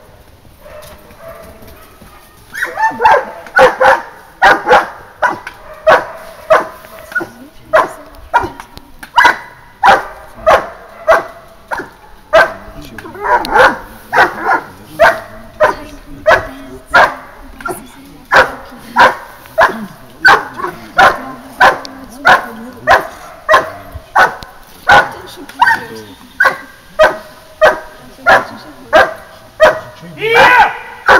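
German shepherd dog barking at a helper in a blind, a hold-and-bark. The barks are loud and evenly paced, about two a second, and start about two and a half seconds in.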